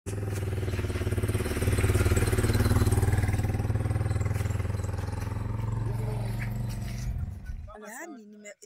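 A motor vehicle engine running steadily close by. It grows louder about two seconds in, eases off, then cuts off suddenly just before the end.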